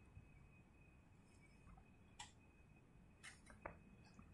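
Near silence with a few faint clicks: one about two seconds in and three close together near the end, over a faint steady high whine.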